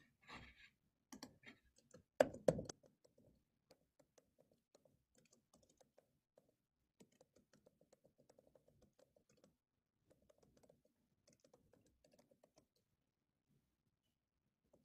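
Computer keyboard typing, faint: a few louder key strikes in the first three seconds, then scattered runs of light, quick key clicks.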